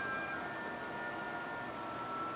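Quiet, steady room tone: a low even hiss with a few faint, steady high-pitched tones, and no voices.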